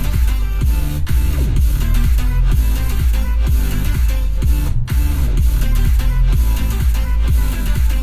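Electronic music with heavy bass and a steady beat playing through the 2021 Hyundai Santa Fe's 12-speaker Harman Kardon sound system, heard inside the cabin. The music drops out for a moment about five seconds in.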